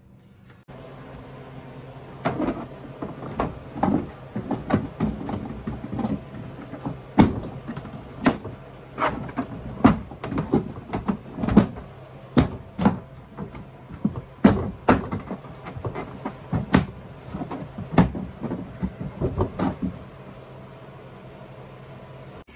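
Plastic inner trim panel of a hatchback tailgate being handled and pressed into place by hand. It gives an irregular string of sharp knocks and clicks from about two seconds in until near the end.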